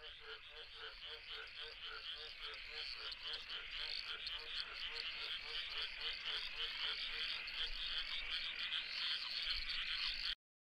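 A chorus of frogs calling: one low croak repeating about three times a second under a dense, many-voiced higher calling, slowly growing louder.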